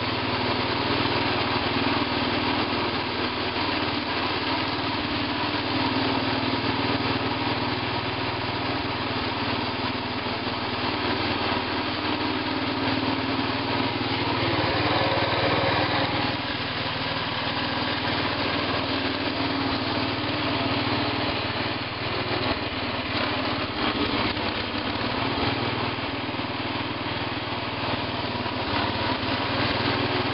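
Sears Suburban 12 garden tractor's Tecumseh engine running steadily as the tractor drives along, a little louder around the middle.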